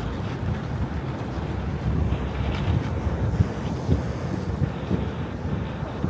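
Wind buffeting the camera microphone over steady city street traffic noise, a continuous low rumble.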